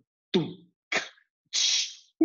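Three short vocal-type sounds one after another, each captured or played as a separate sample in a sampling app. The first is a falling swoop, the second a brief blip, and the third a breathy hiss like a 'shh'.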